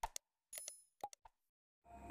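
Faint user-interface sound effects from a like-and-subscribe animation: a few short clicks in the first second or so, two of them carrying a brief pitched blip, as the cursor clicks the buttons.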